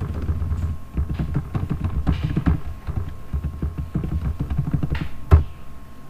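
Computer keyboard typing: a rapid run of keystrokes as an admin username and password are entered, followed by one sharp, louder click near the end.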